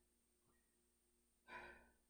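Near silence, then about one and a half seconds in a single short, breathy exhale from a person exercising hard, fading out quickly.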